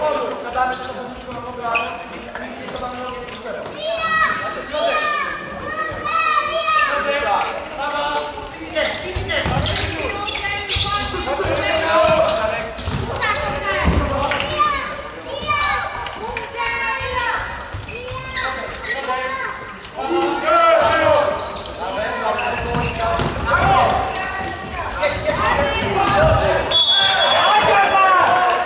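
Futsal ball being kicked and bouncing on a hardwood court, with players and benches shouting calls, all echoing in a large sports hall.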